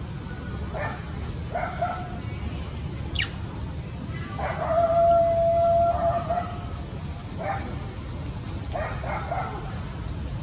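An animal calling: a few short calls, then one long steady call held for about a second and a half a little before the middle, and more short calls after it, over a steady low rumble.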